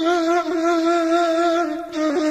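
Background music: a solo breathy flute holding one long note with a slow waver.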